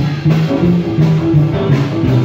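Live rock and roll band playing loudly: electric guitar over drums, with a bass line stepping from note to note about four times a second.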